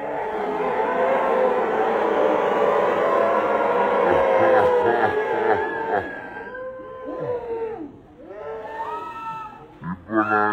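A theatre crowd cheering and shouting, many voices at once. After about six seconds it thins to a few separate long shouts.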